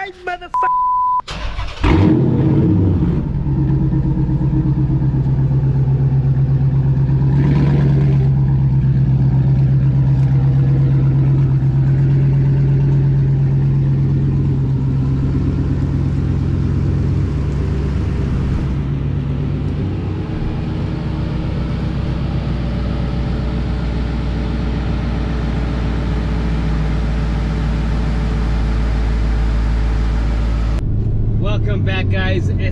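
A short beep, then a Dodge Charger SRT8's HEMI V8 starting, remote-started from the key fob, and settling into a steady idle.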